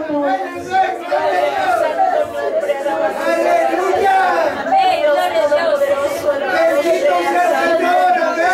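A woman praying aloud into a microphone, her voice running on without pause, with other voices under it.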